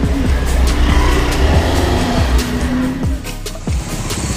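A car driving by on the street close by, a low rumble that drops away sharply about three seconds in, with background music playing over it.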